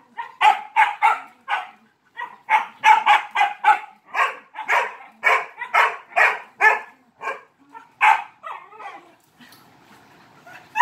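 A dog barking over and over in quick runs, about three barks a second, with a brief pause about two seconds in, stopping shortly before the end.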